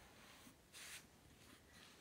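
Near silence: room tone, with one faint, brief hiss just under a second in.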